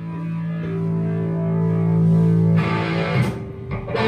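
Live rock band intro: a distorted electric guitar chord rings and sustains, then about two and a half seconds in the playing turns choppier with a couple of sharp drum-kit hits as the band builds into the song.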